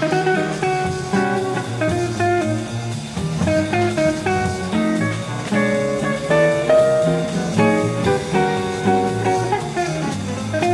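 Jazz quintet performance with a guitar leading a run of separate plucked single notes over bass accompaniment.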